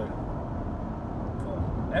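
Steady low road and engine rumble heard inside the cabin of a 2014 Ford Mondeo wagon on the move.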